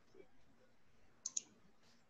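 Two sharp clicks in quick succession a little over a second in, followed by a fainter click, over faint room noise.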